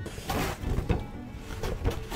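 Paper towels torn from a roll and rustled as the sheets are pulled out and spread, with music playing in the background.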